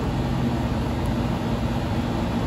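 Steady low machine hum with a constant drone, unbroken throughout.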